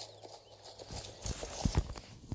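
Several short, irregular knocks and bumps of a phone being handled and moved, the loudest near the end, over a faint steady low hum.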